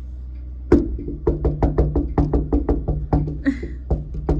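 A rapid, regular series of sharp knocks, about six a second, starting under a second in and running on, over a low steady hum.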